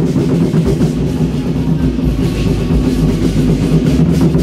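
Battle-drum troupe (zhangu) playing large Chinese drums in loud, continuous drumming.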